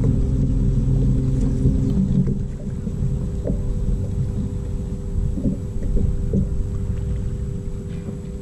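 Bow-mounted electric trolling motor on a bass boat humming steadily, with a deeper rumble that drops away about two seconds in; a few light knocks on the deck.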